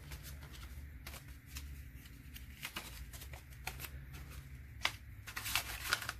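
A stack of US dollar bills being handled and folded by hand: soft paper rustling with scattered crisp flicks, the sharpest a little before the end.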